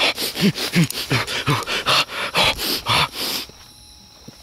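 Dogs barking fast and over and over, about three barks a second, stopping suddenly about three and a half seconds in.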